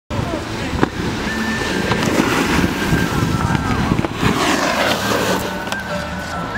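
Indistinct voices over loud crackling, scraping noise of snowboards on snow, with a few sharp clicks.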